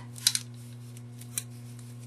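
Jute twine being wound by hand around a candle in a glass holder, with a few short scratchy clicks and rustles as the twine drags over the candle and the fingers shift their grip: two close together near the start, one more in the middle. A steady low hum runs underneath.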